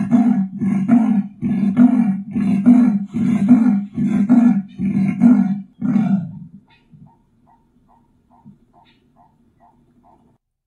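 Leopard giving its sawing call: a run of about ten strokes, roughly one and a half a second, which stops about six seconds in. Only faint quick ticks follow.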